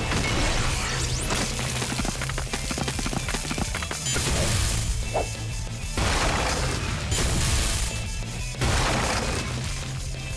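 Cartoon transformation sequence: a driving music score with steady bass notes, overlaid by dramatic sound effects, with crashing, shattering hits and several loud whooshing swells in the second half as the character transforms into a fire alien.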